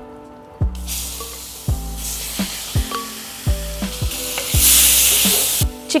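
Marinated chicken pieces sizzling as they drop into hot oil in a cast-iron pan; the sizzle starts about a second in and is loudest near the end. Background music with a steady beat plays underneath.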